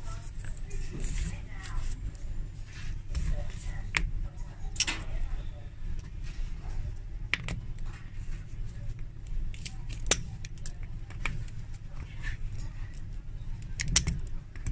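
Scattered sharp clicks and taps of a cobbler's hand tools working on a stiletto heel and its metal heel pin, over a steady low hum.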